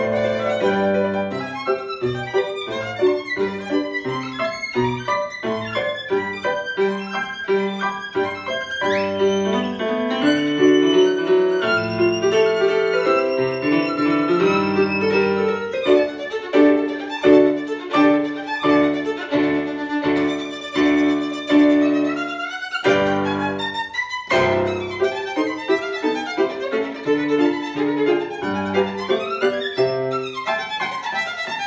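Solo violin played with the bow over a keyboard piano accompaniment. The melody makes a quick upward slide about nine seconds in, and the music pauses briefly about two-thirds of the way through before carrying on.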